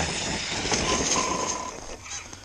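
Losi DBXL-E 1/5-scale electric desert buggy driving over grass and leaves: a rushing noise of tyres with a faint steady whine from its motor in the middle, fading towards the end.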